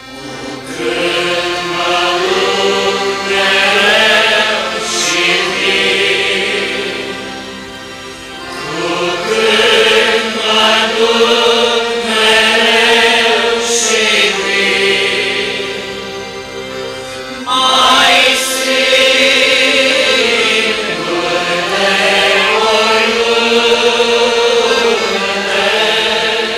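Congregation singing a Romanian Orthodox hymn together from hymnbooks, many voices in long, held phrases. The singing eases between phrases about 8 and 16 seconds in and starts a new phrase near 18 seconds.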